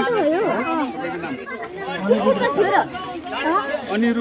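Several people talking over one another: crowd chatter.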